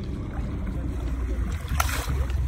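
A fish is released by hand at the water's surface and splashes once as it kicks away, near the end. Under it runs a steady low rumble.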